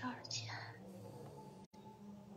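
Faint, breathy speech sounds in the first half second, then a low steady hum with the audio cutting out for an instant near the end.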